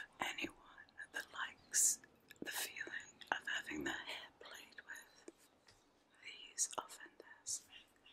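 A woman whispering close into the microphone in short breathy phrases, with a few sharp hissy bursts.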